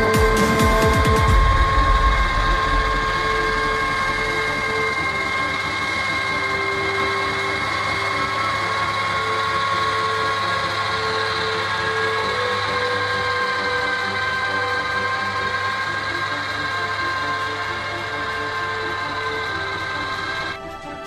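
New Holland T7 210 tractor's six-cylinder diesel running under load while driving a rotary harrow through the soil, with a steady high-pitched whine from the driveline over the engine.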